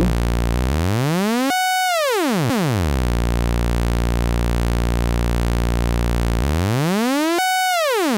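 Analog synthesizer oscillator (Doepfer A-110 VCO) drone with a low, buzzy pitch. Twice, about six seconds apart, its pitch swoops up, jumps at the peak and slides back down, as LFO waveforms passed through an A-131 exponential VCA modulate its frequency.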